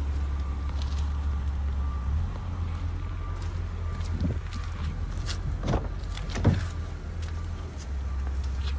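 2016 Honda Civic's 2.0-litre four-cylinder engine idling with a steady low hum. Several knocks sound toward the middle, the loudest a clack about six and a half seconds in as the driver's door is opened.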